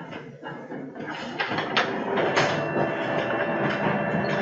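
Office photocopier starting suddenly and running a copy: steady mechanical running with a series of clicks.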